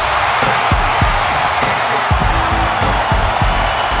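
Wrestling entrance music with a heavy drum beat, played over a cheering arena crowd.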